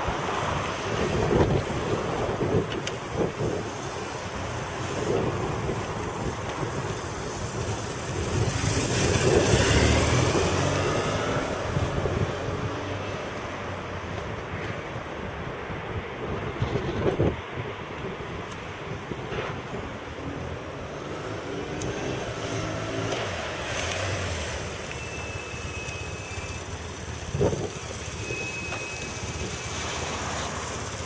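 BMW R1150R's flat-twin engine running on the road as the bike is ridden past, mixed with road traffic and wind on the microphone. A vehicle passes loudly about ten seconds in, swelling and fading away.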